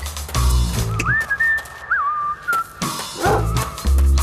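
Funky music with bass and guitar breaks off for about two seconds while someone whistles a short gliding tune, rising and dipping. Near the end a dog gives a short woof as the music comes back in.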